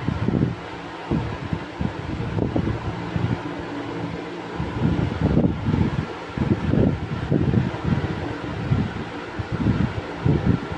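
Cake batter being stirred fast by hand in a plastic mixing bowl: a run of dull, irregular thumps and scrapes, with a steady fan-like hum underneath.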